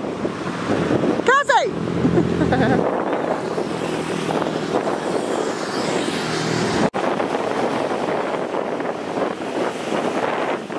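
Wind rushing over the microphone with the wash of breaking surf, steady throughout, with a short high cry about a second and a half in. The sound briefly cuts out about seven seconds in.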